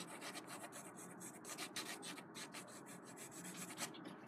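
AnB Eagle graphite pencil hatching on drawing paper: faint, quick back-and-forth strokes scratching against the paper, several a second.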